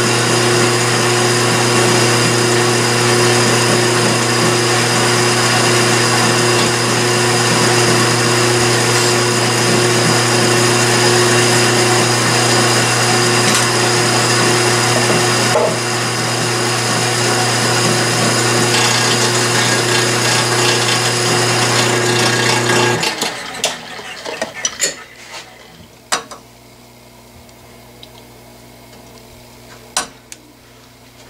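Metal lathe running steadily with a hum during the final pass on a gray cast-iron backing plate, then switched off about 23 seconds in. Light metallic clicks and clatter follow as the plate is handled and checked with a micrometer.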